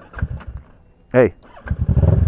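Sport motorcycle engine starting near the end, catching and settling into a steady, even idle.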